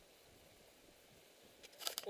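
Quiet outdoor background hiss, with a few short clicks or rustles near the end.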